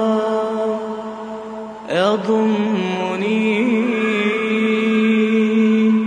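Solo vocal chanting in the background: a single voice holds long, ornamented notes, easing off and then starting a new phrase with an upward swoop about two seconds in.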